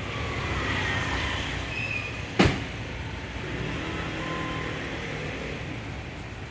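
Steady background road-traffic noise, with one sharp knock about two and a half seconds in.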